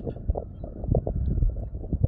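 Wind buffeting a phone's microphone: an uneven, gusty rumble with no other clear sound.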